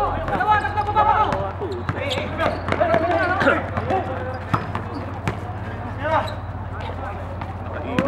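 Basketball bouncing on a concrete court during a game, with sharp impacts scattered through it and players shouting.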